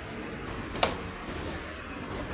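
A single sharp click about a second in, from the opened laptop's metal chassis being handled on the desk, against quiet room tone.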